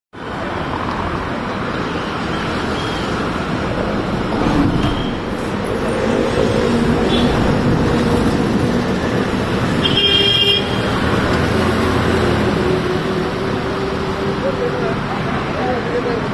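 Steady city street traffic: vehicles running past, with a short horn toot about ten seconds in.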